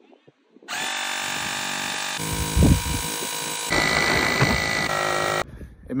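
X2Power cordless lithium-battery tire inflator's compressor running steadily as it pumps air into a truck tyre, starting about a second in and cutting off suddenly near the end. Its tone shifts abruptly twice along the way.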